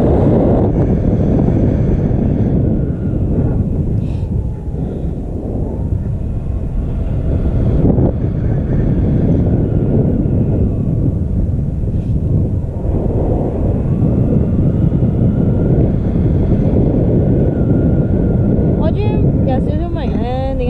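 Airflow buffeting the camera's microphone in paraglider flight: a loud, steady low rushing and rumbling of wind.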